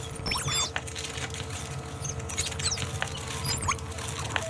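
Electroacoustic free-improvisation music: three clusters of quick, high squeaky pitch glides and scattered clicks over a crackling texture, with a steady mid-pitched tone held underneath until near the end.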